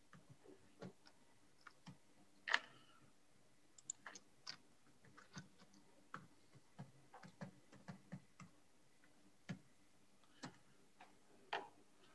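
Faint, irregular keystrokes on a computer keyboard as login details are typed in, one click about two and a half seconds in louder than the rest.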